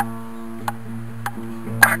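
Background music with long held notes, over which a table tennis ball taps lightly on a paddle four times, roughly every two-thirds of a second.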